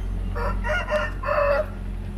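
A rooster crowing once, starting about a third of a second in and ending on a held note, over a steady low hum.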